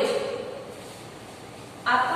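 A woman's voice trails off, then a pause of about a second and a half filled only by a low, steady hiss, before her voice starts again near the end.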